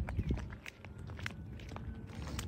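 Footsteps close to the microphone: a string of irregular light steps and clicks.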